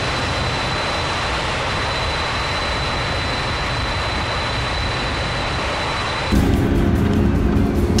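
Boeing 747 jet engines at takeoff thrust, as game sound: a steady rushing roar with a thin high whine. About six seconds in, it gets louder and a low sustained music chord comes in.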